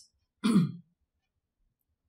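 A woman clearing her throat once, a short sound that falls in pitch, about half a second in.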